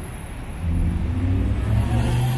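Engine hum of a passenger van passing close by in street traffic, growing louder about half a second in as it draws level.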